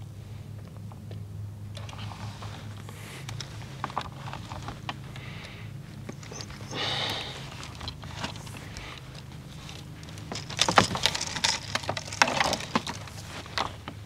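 Insulated electrical wire being fed by hand into PVC conduit: scraping, rustling and clicking of the cables against each other and the pipe, with a louder run of sharp clicks and rattles near the end.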